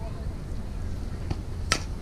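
Softball bat striking a pitched ball: a sharp crack near the end, after a fainter knock a little over a second in.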